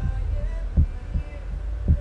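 Heartbeat sound effect: a low double thump, heard twice about a second apart, over a low steady drone.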